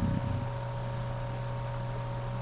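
Steady low hum and hiss of room tone picked up by the microphone, with faint steady higher tones. The tail of a drawn-out spoken 'um' fades out at the very start.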